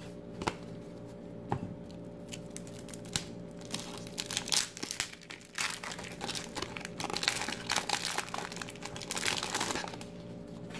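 A 1993 Fleer football trading card pack being torn open, its wrapper crinkling under the fingers. A few light clicks come first, then dense crinkling from about halfway through.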